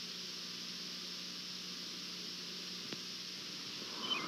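Steady hiss and static from an analog VHS tape recording in the silent gap between TV broadcast segments, with a faint low hum and one small click about three seconds in.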